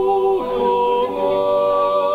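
Group of Swiss yodelers singing a natural yodel in close harmony, several voices holding long chords that change about half a second in and again about a second in.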